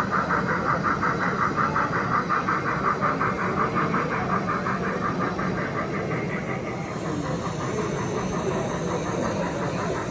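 Steady background noise of a model railway exhibition hall, with a rapid rhythmic pulsing of about five beats a second that dies away about two-thirds of the way through.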